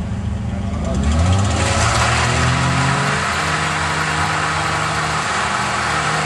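Nissan Skyline R31's engine rising in revs about a second in, then held at a steady higher speed, with a broad hiss joining it.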